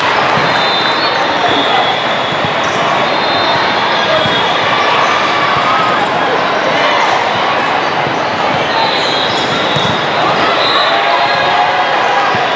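Steady din of a large exhibition hall full of volleyball courts in play: volleyballs being hit and bouncing on the hard floor on many courts, under a constant babble of players' and spectators' voices.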